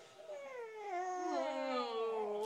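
A high voice drawn out in one long, unbroken sound that starts about a quarter-second in and slides steadily down in pitch.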